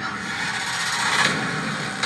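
Trailer sound effect: a noisy rumble with no clear pitch, swelling to a peak a little past halfway, heard through a television speaker.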